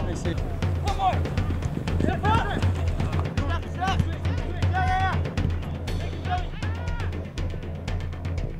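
Background music with a steady drum beat, with short voice calls over it several times.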